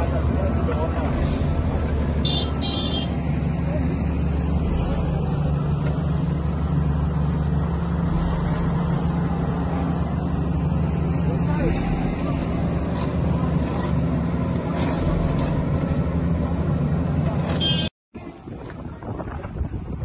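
Diesel engine of an asphalt paving machine running steadily with a low hum, with voices over it. The sound cuts off abruptly near the end and gives way to quieter outdoor sound with voices.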